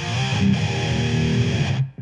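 A short electric-guitar riff played as a scene-change sting, cutting off near the end.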